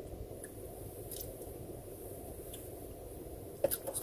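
Steady low hum of a car's interior, with a few faint clicks and sharper ones near the end.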